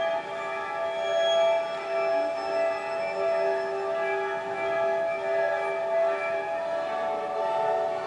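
String orchestra playing an atonal modern work, holding long, steady chords of several sustained notes at once.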